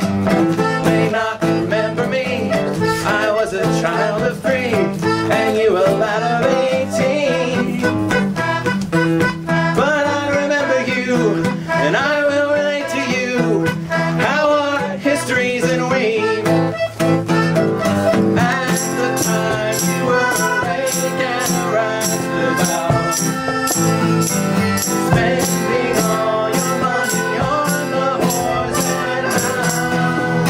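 Instrumental introduction of a folk song: an acoustic guitar played under a wavering melody line. A little past halfway a steady rattling percussion beat joins in.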